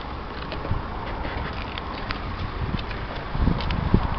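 Steady outdoor background noise with a low wind rumble on the microphone, and a few soft thumps in the last second from footsteps walking alongside the car.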